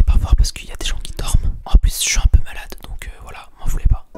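A man whispering right into a microphone held in both hands, close enough that his breath and the handling make low thumps on the mic.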